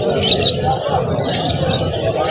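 Small cage birds chirping in short, high calls a few times, over a low murmur of background voices.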